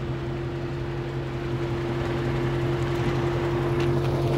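Steady low mechanical hum of an idling engine, with a constant drone, growing slowly louder.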